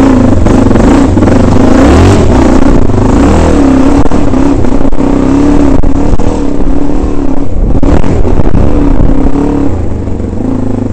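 Husqvarna dirt bike's engine running loud and close, the revs rising and falling over and over as the rider works the throttle over rough, rocky ground. Knocks and rumble from the bike and the mount sound over the engine.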